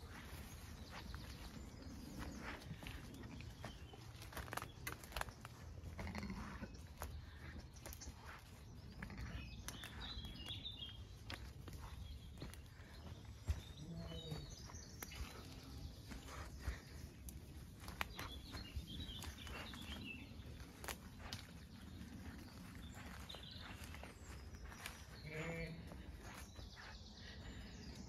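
Footsteps through grass, with a few faint sheep bleats now and then.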